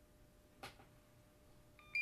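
Quiet room with a faint scratch of a pen on a paper pad about half a second in, then a short electronic beep near the end from the bench meter, the loudest sound here, signalling that its measurement is done.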